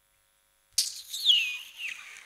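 A man sucking his teeth into a microphone, the scornful Swahili 'msonyo': a squeaky suction sound about a second in, falling in pitch, with a short second squeak near the end.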